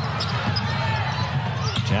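Basketball dribbled on a hardwood court, with the steady noise of an arena crowd underneath.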